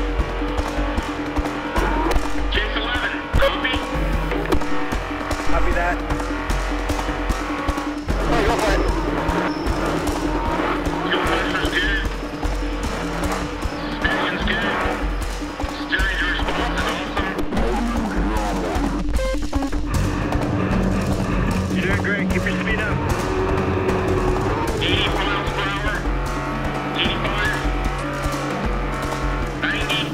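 Background music over the engine and tyre noise of an off-road trophy truck driving at speed, heard from inside the cab.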